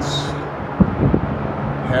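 Steady road traffic noise from a nearby interstate highway, with a faint low hum in it and a single sharp knock about a second in.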